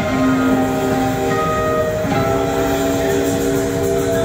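Live rock band playing slow, sustained held chords, with the electric guitar to the fore; the chord changes once about two seconds in.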